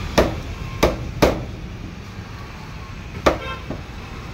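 A large curved fish-cutting knife chopping parrotfish on a wooden log block: three sharp chops in the first second and a half, then one more about three seconds in.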